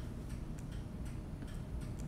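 Faint light clicks or ticks at uneven intervals, over a low steady room hum.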